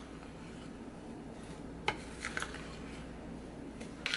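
A metal fork stirring stiff, crumbly cookie dough in a glass mixing bowl: a soft, steady scraping, with a sharp tap of metal on glass about two seconds in and a few lighter clinks just after.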